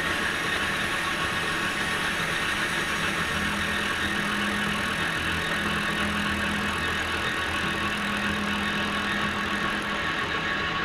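Manual Victor lathe running steadily, its chuck spinning an aluminum part while a facing cut is taken across the face, a steady machine whine with a faint low hum.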